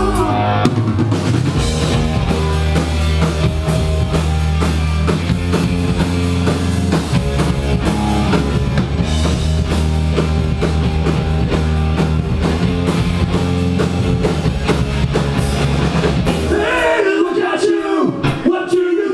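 Live rock band playing loud: drum kit, electric guitar and bass guitar together. About a second before the end the low bass drops out while the drums carry on and a higher melodic line comes forward.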